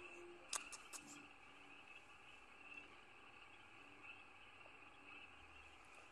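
Near silence: a faint, steady chorus of night insects, with a few light clicks about half a second to a second in.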